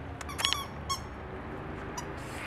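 A dog whining: two short high-pitched whines, the first about half a second in and a shorter one about a second in.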